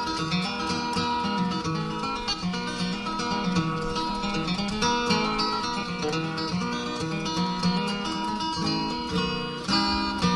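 Acoustic bluegrass string band playing an instrumental break between verses, with flatpicked acoustic guitar prominent over rhythm and bass.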